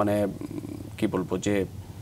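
Speech only: a man talking in short phrases with brief pauses between them.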